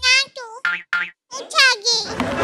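A young boy's high-pitched voice talking into a microphone in short, sing-song bursts with swooping pitch, broken by a brief pause about a second in.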